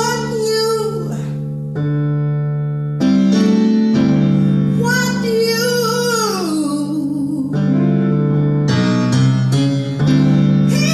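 A woman singing live into a microphone to electronic keyboard accompaniment. She holds long notes, and one slides down in pitch about six seconds in.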